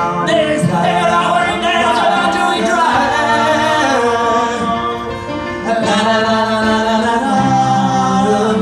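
Live singing over music, heard through a phone's microphone: a voice holding long notes that slide from pitch to pitch.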